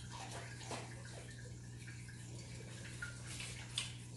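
A dog sniffing and snuffling faintly at a hardwood floor over a steady low room hum, with a few light ticks and a slightly sharper one near the end.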